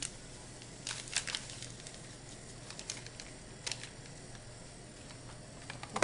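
Paper pouch of gelatin powder crinkling in the hands as it is emptied into a saucepan: a few short crackles, a cluster about a second in, one past the middle and another at the end, over a faint steady hum.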